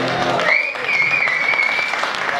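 Audience applauding as a song ends, with the last sung note fading out at the very start. From about half a second in, a long, high, steady whistle sounds over the clapping.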